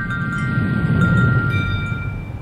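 Closing logo sting: held, ringing chime tones over a low whoosh that swells to its loudest about a second in and then starts to fade.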